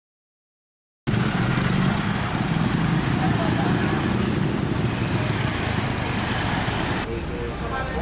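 Roadside traffic and street noise with a heavy low rumble, starting about a second in. Near the end it cuts to a quieter indoor sound with voices.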